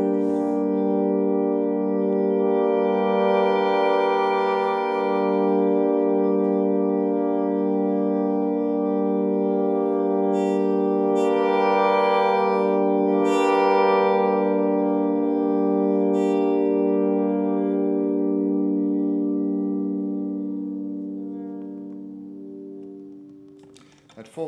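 Acoustic guitar chord held in endless, organ-like sustain by a Vo-96 acoustic synthesizer driving the strings. Higher overtones swell in around the middle, then the whole chord slowly fades away near the end.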